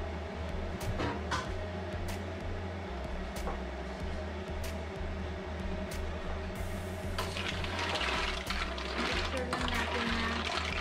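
Background music with a steady beat. From about seven seconds in, a louder rushing, sloshing sound of mussels and their white-wine liquid being stirred by hand in a large stainless steel stockpot.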